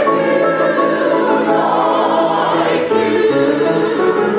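Mixed chorus of men and women singing operetta in full harmony, holding long, sustained notes with vibrato and shifting pitch a few times.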